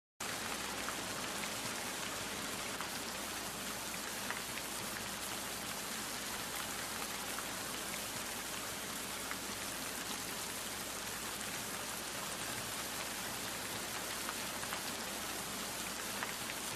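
A steady, even hiss with faint scattered crackles, like rain or static, starting just after the beginning and holding level throughout.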